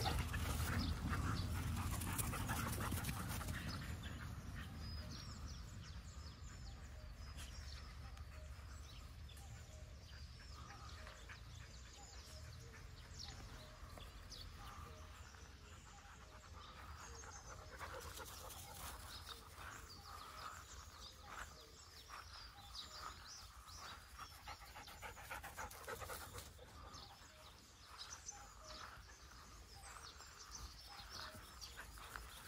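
A dog panting, faint, with a low rumble that fades away over the first few seconds.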